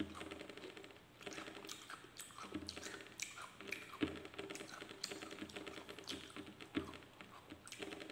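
Close-miked eating sounds: a dense run of small quick clicks from chewing and from fingers working rice and a crumbly topping on a banana leaf, with a few louder smacks now and then.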